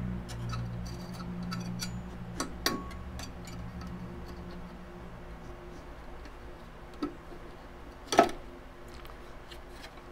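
Hard plastic housing and hand tools clicking, scraping and knocking as the housing is worked down over the NAS chassis past an inner ridge. Many small clicks in the first few seconds, then a few single knocks, the loudest about eight seconds in.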